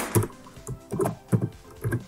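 Computer keyboard keystrokes: about six separate key taps at uneven spacing as a short file name is typed.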